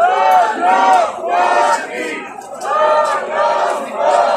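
Large crowd of protesters chanting a slogan together, loud, in repeated rhythmic phrases.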